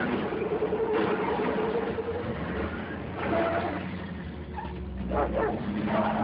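A dog whining in long held tones, with a vehicle engine running low underneath.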